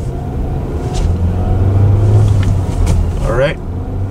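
Nissan Qashqai's 1.3-litre turbocharged four-cylinder petrol engine pulling away in first gear, heard from inside the cabin as a low hum that grows louder about a second in.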